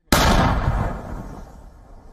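A howitzer fires a single round: a sudden loud blast about a tenth of a second in, then a rumbling decay that fades over about a second.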